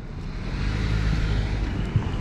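A car driving past on the street, its engine and tyre noise rising over the first second and then easing off.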